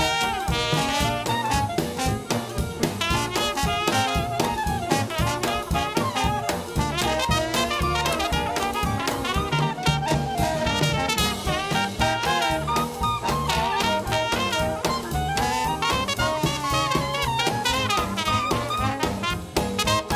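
A small traditional jazz band plays an upbeat swing tune. A trumpet leads, with clarinet and trombone around it, over upright bass and a drum kit keeping a steady beat.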